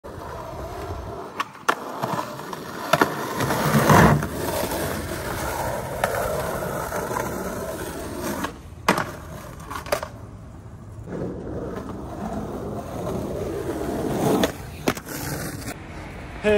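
Skateboard wheels rolling over rough concrete, with sharp clacks of the board hitting the ground several times. The loudest clack comes about four seconds in.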